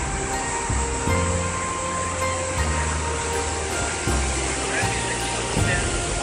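Background music, its low bass notes held for about a second each, over a steady wash of noise.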